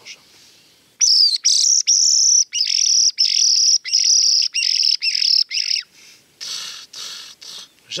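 HB Calls reference 83 wounded-bird predator call, sounded by sucking air through its wooden end while rasping the throat. It gives a rapid series of shrill squeals, broken into about ten short bursts over some five seconds, starting about a second in. The call imitates a wounded bird in distress, used to lure foxes.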